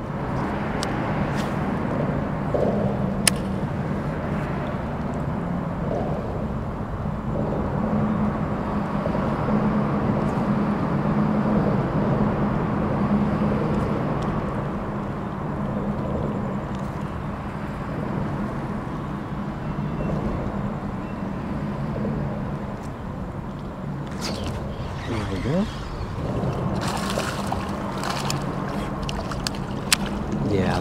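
A steady low mechanical hum runs throughout, with a click about three seconds in. Near the end come short bursts of water splashing as a small speckled trout is brought to the side of a kayak.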